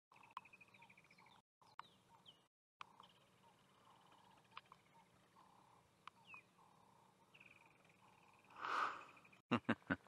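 Faint bush sounds: high trills of rapidly repeated notes, typical of birds, come and go, with a few light clicks. Near the end there is a short, louder noisy burst, then a quick run of short, evenly spaced pulses starts just before the close.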